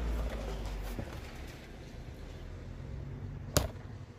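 Handling noise from a phone camera being picked up and moved: a low rumble and rustle for about the first second. Then quieter background, and a single sharp click near the end.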